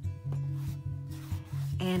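A wide flat paintbrush scrubbing acrylic paint onto a canvas in quick up-and-down strokes, a rough scratchy rubbing, over background music with a steady low bass line.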